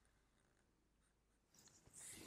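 Near silence: faint room tone, with faint scratching of a felt-tip marker on paper near the end.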